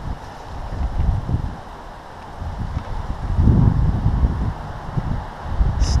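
Wind buffeting the microphone in uneven low gusts, with rustling of dry brush as a hooked fish is brought in.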